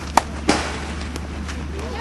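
A pitched baseball smacks into the catcher's glove about half a second in, with a short rattling tail, after a brief sharp click. The pitch just misses the strike zone.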